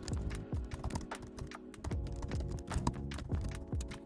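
Fast typing on a computer keyboard: quick, irregular key clicks, with background music running underneath.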